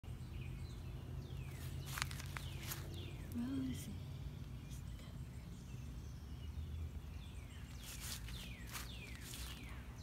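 Birds calling outdoors in quick, falling high-pitched notes, in two clusters a few seconds apart, over a low steady background rumble.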